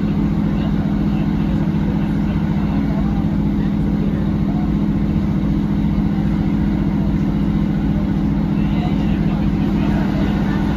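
Northern Class 150 diesel multiple unit running along, heard from inside the carriage: a steady low drone from its underfloor Cummins diesel engine over a lighter rushing of wheel and track noise.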